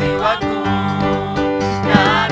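Live gospel praise song: a woman's lead voice singing in Swahili through a microphone over instrumental accompaniment with steady held bass notes.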